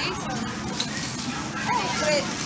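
Clothing-store background: a steady murmur of room noise with faint, distant voices, and a short vocal sound near the end.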